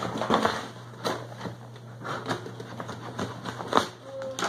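A taped cardboard shipping box being opened by hand: irregular crackling and scraping of cardboard and packing tape, with a louder crack near the end.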